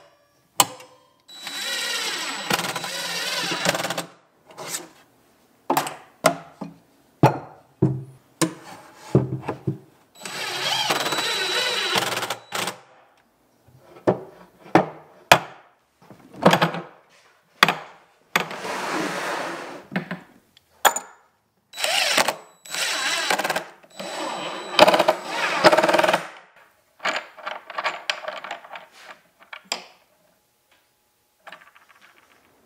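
Power drill running in bursts of two to three seconds, about five times, with a steady high motor whine, and sharp clicks and knocks of parts being handled between the runs.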